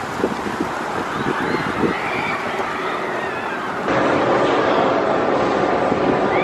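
Outdoor ambience with wind buffeting the microphone over the steady rumble of a B&M hyper roller coaster running on its track, with a few high chirps. The sound changes abruptly about four seconds in and grows louder and steadier.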